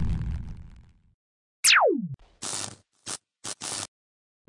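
Edited sound effects: the fading tail of a deep boom, then a quick whistle-like tone falling steeply in pitch, followed by four short bursts of mechanical noise cut apart by dead silence.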